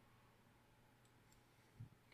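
Near silence: faint room tone with two faint clicks about a second in, typical of a computer mouse button, and a brief low sound just before the end.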